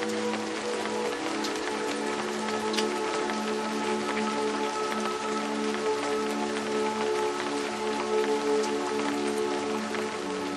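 Steady rain falling, a constant hiss dotted with many small drop ticks, over a bed of ambient music: slow, long-held low notes.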